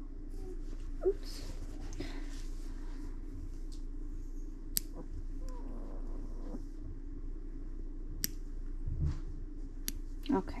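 Small human toenail clipper snipping a puppy's toenails: four sharp single clicks spaced a few seconds apart, over a faint steady hum.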